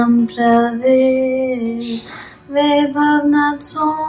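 A girl's voice singing a Kashmiri vakh in long held notes, with a short break for breath about two seconds in, after which the tune moves a little higher.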